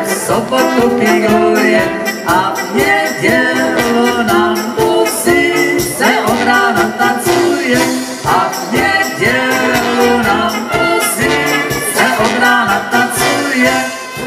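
Live brass band music: brass instruments and a drum kit playing a song with a steady beat, while male and female singers sing through the PA.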